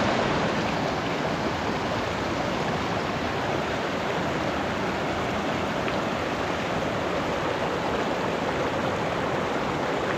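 Shallow mountain stream running over rocks: a steady rushing of water.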